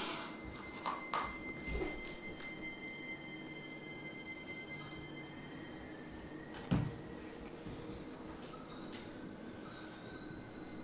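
Faint stage music or soundscape: a held high tone, with softer high tones swelling and fading about once a second. A few soft knocks sound early on, and a louder thump comes about seven seconds in.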